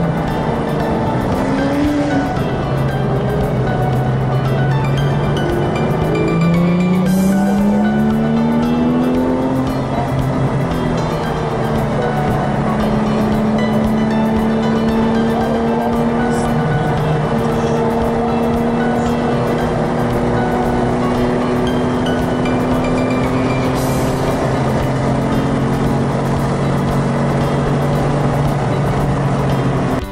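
Car engine heard from inside the car at speed on a race track, its pitch climbing through the gears in the first ten seconds and then holding steadier, with music laid over it.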